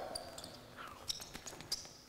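Basketball bouncing faintly on a hard indoor court floor: a few scattered knocks, along with some short high squeaks.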